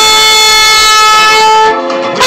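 Trumpet holding one long steady note, then a brief, quieter lower note near the end.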